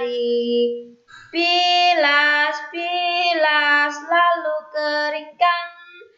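A child singing an Indonesian children's song solo and unaccompanied, in held phrases with a short pause about a second in.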